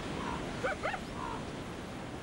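A coyote giving a few short, rising yips.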